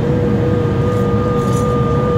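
Inside a V/Line Vlocity diesel multiple unit running at speed: a steady rumble with a steady whine, and a fainter higher whine joining about half a second in, with a few light clinks.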